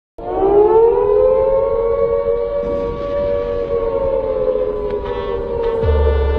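Air-raid siren wail that rises in pitch over the first second, then holds a steady tone. A low bass beat comes in right at the end.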